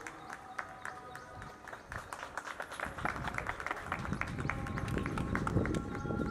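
Scattered hand-clapping from a small group over background music. The clapping grows denser after about two seconds, and crowd voices rise in the second half.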